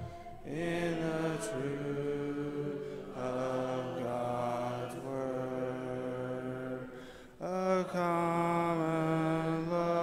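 Congregation singing a hymn a cappella, many voices holding long sustained notes. The singing breaks briefly between phrases near the start and again about seven seconds in.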